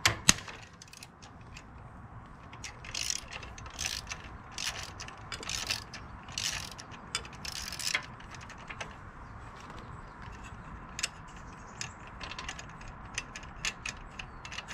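Hand ratchet clicking in strokes, about one a second for several seconds, as a bolt on a motorcycle's footpeg bracket is turned. There are two sharp metallic clicks at the very start and lighter clicks and taps near the end.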